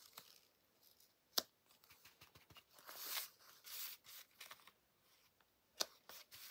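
Quiet craft-table handling sounds: a clear acrylic stamp block knocks down sharply about a second and a half in and again near the end, with a soft rustle of the paper card being moved and turned between them.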